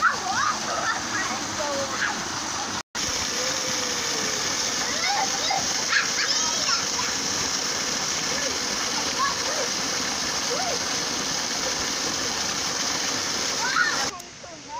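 Steady rushing of water pouring from a pipe and splashing into a shallow pool, with children splashing in it. The sound cuts out for an instant about three seconds in.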